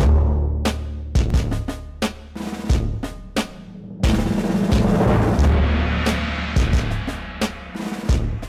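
Dramatic drum music track: a deep booming bass hit at the start and again about four seconds in, with sharp drum strikes between.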